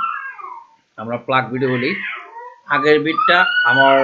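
A man speaking at a lecture pace, with a short pause about a second in. Two high gliding cries sound over the voice, one falling at the start and one rising and held near the end.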